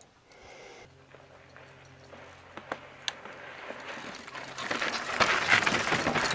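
Electric mountain bike with a Bosch mid-drive motor moving on a dirt trail. A steady hum sets in about a second in and stops a little past the middle, with a few clicks from the drivetrain. Tyre and wind noise then builds toward the end.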